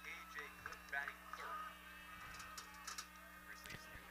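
Faint open-air ballpark sound of distant voices and chatter from players and spectators. Near the end comes one sharp crack of a bat hitting a pitched ball.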